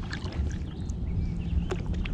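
Kayak paddle strokes in calm lake water: the blade dipping in with small splashes and drips, over a steady low rumble.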